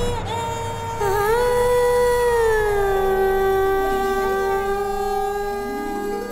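A long sustained sung note in a Hindi film song's opening: the voice bends in pitch around the first second, slides down a little and then holds, over a low steady drone. A second note rises in beneath it near the end.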